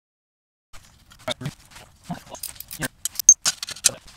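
A ratchet wrench working a fastener on a moped engine: a run of irregular metal clicks and clinks, with one sharp, ringing metallic ping near the end.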